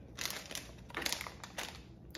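Crinkling and rustling of shredded paper basket filler and plastic candy packaging being handled, in two spells.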